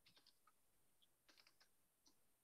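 Faint computer keyboard typing: two quick runs of keystrokes, one at the start and one about a second and a half in.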